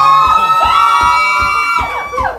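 Music: a song with a high sung note that slides up and is held, then drops away near the end, over a steady low beat about three times a second.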